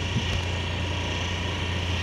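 Steady low engine drone of the vehicle carrying the camera as it travels along a paved road, heard from on board with a hiss of road and air noise.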